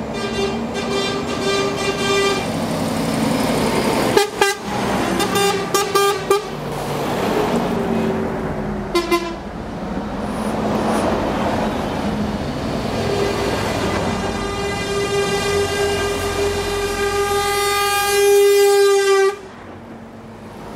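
Convoy trucks and a coach driving past, sounding their horns: a long blast at the start, a run of short toots between about four and nine seconds, and a long steady blast in the last third that cuts off suddenly just before the end, over engine and tyre noise.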